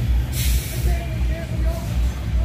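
Coach bus pulling in slowly, its diesel engine making a heavy low rumble, with a short hiss of air brakes about half a second in.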